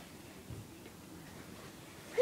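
Quiet room with a few faint ticks and a soft knock about half a second in.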